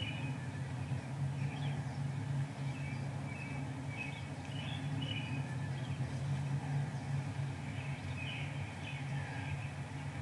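Outdoor park ambience: small birds chirping now and then over a steady low rumble.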